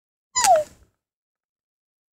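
A child's voice giving one short, high squeak that falls in pitch, like a kitten's mew.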